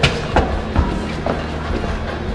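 Footsteps climbing steps, several thuds about half a second apart, over background music with a steady bass.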